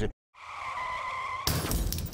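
Tyres of a Porsche 911 GT3 RS squealing as the car turns slowly on smooth pavement: one steady squeal held at a single pitch for about a second. About a second and a half in, a sudden louder rush of noise takes over.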